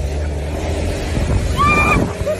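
A woman's high-pitched laughing squeal, one short shriek near the end, over the steady low rumble of a moving car.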